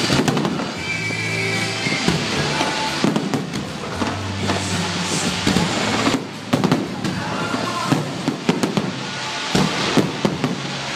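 Aerial firework shells launching and bursting in quick succession, many sharp bangs one after another, with a brief lull about six seconds in, over music played for the show.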